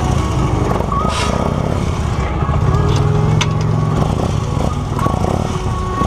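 Police motorcycle engine running at low speed, heard close from a camera mounted on the bike. The engine note shifts as the throttle is worked and is strongest about halfway through.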